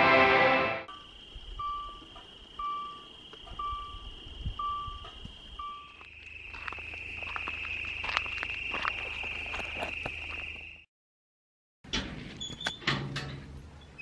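Music ends in the first second. After it comes a steady high trill of night insects, with a short beep repeating about once a second, five times. The trill carries on under scattered clicks and handling noises, cuts off suddenly, and a few more clicks follow.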